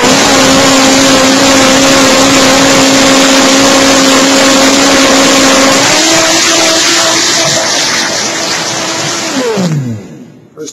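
Countertop blender motor running loud and steady on low speed, blending cut wheatgrass in water. About six seconds in it is switched up to high and the pitch steps up. Near the end it is switched off and the motor winds down with a falling pitch.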